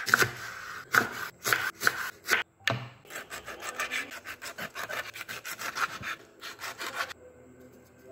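Kitchen knife cutting on a wooden chopping board, through a peeled onion and then raw stingray flesh: a few separate strokes, then a quick run of sawing strokes, about five a second, that stops about seven seconds in.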